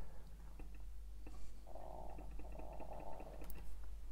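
Pan-tilt motor of an IP camera whirring as the camera turns, in two runs of under a second each with a short break between, amid faint clicks.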